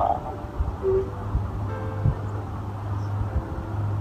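Quiet background music: a few soft, held low notes over a steady low hum that comes in about a second in.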